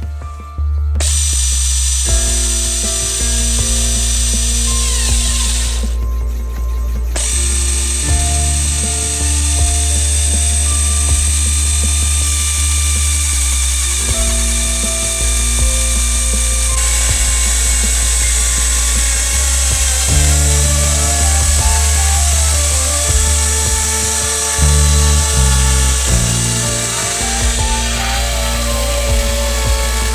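Logosol E5 electric chainsaw on a chainsaw mill ripping along a dry oak log, its motor and chain running under load with a steady high whine. Background music with sustained chords and a changing bass line plays over it throughout.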